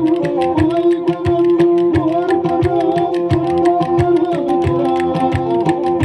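Live Turkish folk dance music: a bowed kemane plays a steady, ornamented melody over a regular drum beat, with quick sharp clacks running through it.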